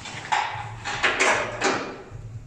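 Footsteps on a wet concrete garage floor, about four steps.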